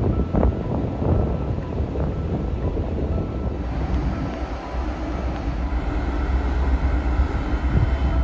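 Steady low rumble of the ferry MV Hrossey's diesel engines firing up for departure, with wind buffeting the microphone on the open deck.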